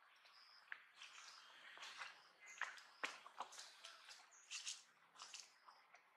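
Faint scattered clicks and rustles from long-tailed macaques handling food and grooming, with a few short high chirps.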